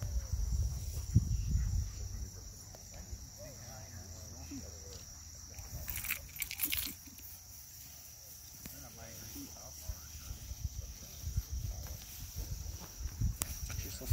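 Field insects droning in one steady, high, even tone, over wind rumble on the microphone and faint distant voices; a short burst of crackling noise comes about six seconds in.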